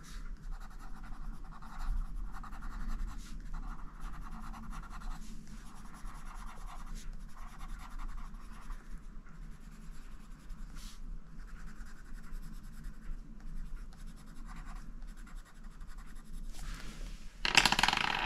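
Magenta Prismacolor Premier coloured pencil scratching on the paper of a colouring book in runs of quick shading strokes, with short pauses between them.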